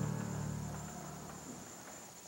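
Low, sustained background music notes fading away over the first second and a half, over a faint steady high-pitched whine.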